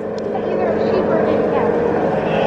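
Background chatter of many voices in a livestock sale barn, with a steady low hum underneath.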